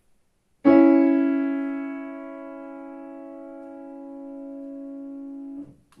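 Digital piano playing several notes struck together as one chord about half a second in, fading for a second or so and then held steady for about five seconds before being released abruptly just before the end. It is measure nine of a melodic dictation played for a student to write down.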